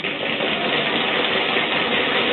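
Drumroll sound effect held steady, building suspense before a quiz answer is revealed.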